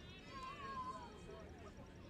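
A distant voice gives one drawn-out call, wavering in pitch, starting about a third of a second in, over faint open-air background noise.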